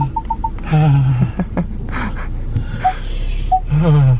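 Parking-sensor beeps of a Ford Focus during an automatic park-assist manoeuvre: a rapid run of short beeps that stops about half a second in, then a few slower, slightly lower beeps spaced well apart near the end. Brief voice sounds come about a second in and just before the end.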